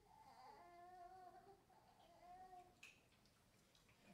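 Near silence, with a faint high-pitched voice heard twice in drawn-out sounds about half a second and two seconds in, and a small click near the end.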